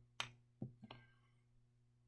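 Three light taps in the first second, the first the loudest, from a plastic dropper bottle and glass beaker being handled. After that comes near silence with a faint steady low hum.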